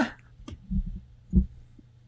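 Two soft, low thumps about half a second apart over a faint steady hum.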